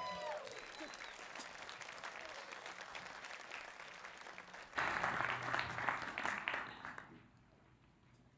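Congregation applauding as a song ends, over the last held note of the band fading out at the start. The clapping thins, swells louder again about five seconds in, then dies away a second before the end.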